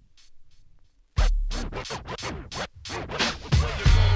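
Hip-hop music from a vinyl record on a DJ turntable drops almost out, then about a second in comes back in loud with record scratching: quick back-and-forth glides cut over the beat. Near the end a heavy bass line comes in.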